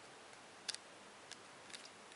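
A few faint plastic clicks, a quick double click under a second in and two single clicks later, over faint hiss, as a small ball-shaped portable speaker is handled and its slide power switch worked.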